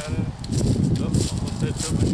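Footsteps through dry grass and fallen leaves, about two steps a second, over a steady low rumble of wind on the microphone.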